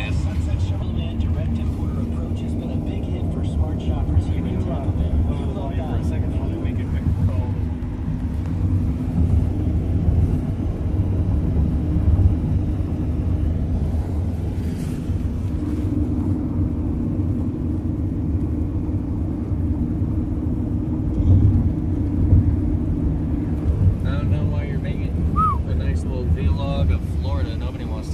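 Steady low rumble of road and engine noise inside the cabin of a car driving at highway speed.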